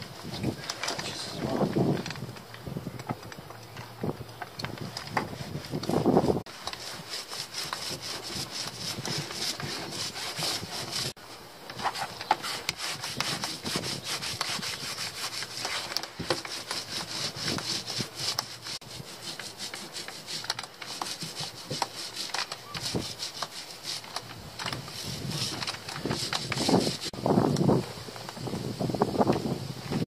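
Brush scrubbing gel coat onto a bare fibreglass boat floor in quick, continuous rubbing strokes.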